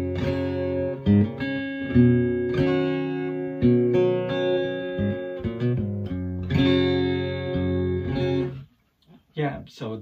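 Cutaway electro-acoustic guitar, plugged straight into a Samson Expedition Express portable speaker with no effects, playing a run of chords that are struck and left to ring. The playing stops about eight and a half seconds in, and a man's voice starts just before the end.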